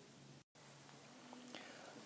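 Near silence: faint recording hiss and hum, cut to total silence for a moment about half a second in.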